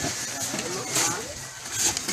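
Several people's voices talking and calling out over one another, with short bursts of hissing, scraping noise in between.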